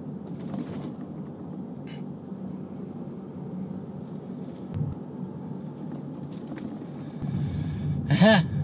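Road and engine noise inside a moving car's cabin: a steady low rumble, with a single dull thump a little past halfway and the rumble growing louder near the end.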